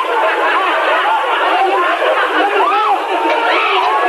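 Several voices crying out and shouting over one another, with repeated "ah!" cries during a struggle. The sound is thin, with no low end.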